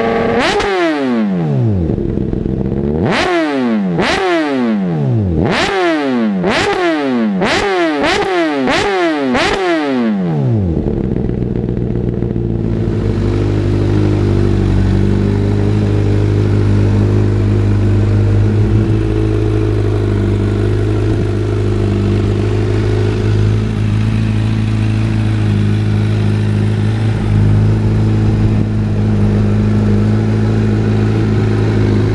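Honda CBR1000RR inline-four engine through a LeoVince titanium full exhaust, revved hard in a run of about eight quick throttle blips, each rising sharply and falling back. After about ten seconds it settles into a steady idle.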